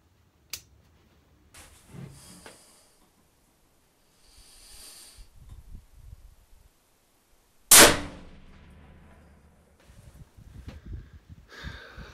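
A single rifle shot from a Savage Model 12FV in 6.5 Creedmoor, loud and sudden with a fading ring after it, heard from inside an enclosed shooting blind about two-thirds of the way in. Before it come a faint click and soft rustling noises.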